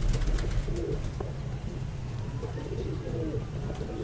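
Domestic pigeons cooing, a few soft low coos over a steady low hum.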